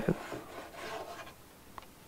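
Rubbing and scraping handling noise that dies away after about a second, then a single light click near the end.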